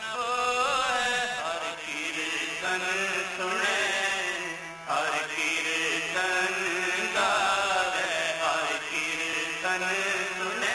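Sikh shabad kirtan: men singing a hymn with melodic ornaments over harmonium, with tabla accompaniment, the singing pausing briefly twice between phrases.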